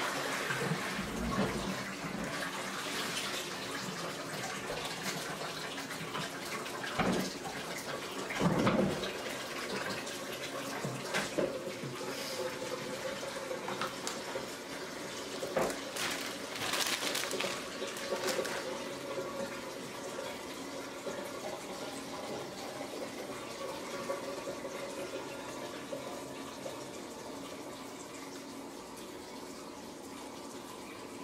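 Steady running water, with a few brief knocks and clatters, about a quarter of the way in and again about halfway.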